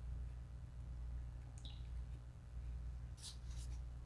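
A man sipping a drink from a paper cup: a few faint, short sipping sounds, mostly about three seconds in, over a steady low hum in a small room.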